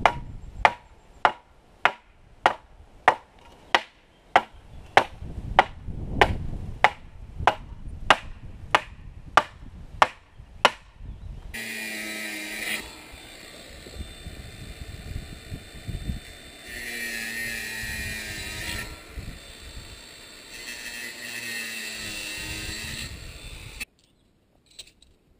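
A hammer strikes the top of a metal fence post about every 0.6 s, some eighteen blows with a short ring, driving the post down. About halfway through, an angle grinder takes over, running steadily and growing louder at times as it cuts the steel wire of a rigid welded-mesh fence panel.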